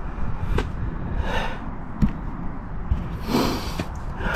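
A man's audible breaths into the microphone, a soft one early and a louder one near the end, with two light clicks, over a low steady rumble.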